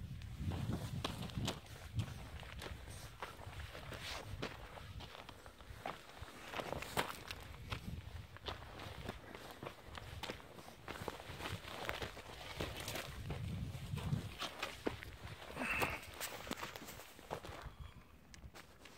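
Footsteps on dry, stony desert ground, irregular steps, with low rumble from the handheld microphone.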